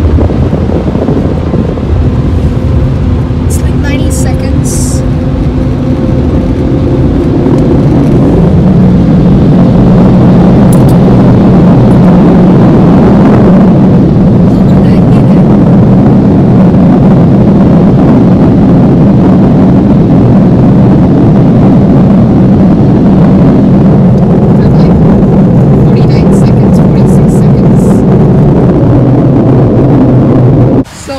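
Automatic car wash equipment running, heard from inside the car: a loud, steady rushing noise with a low hum. It grows louder and fuller about eight seconds in and holds steady from there.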